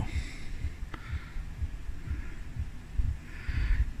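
Wind buffeting the camera microphone outdoors: an irregular low rumble of soft thumps, with a faint click about a second in.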